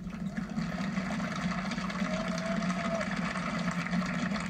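Audience applauding steadily, played through a television speaker.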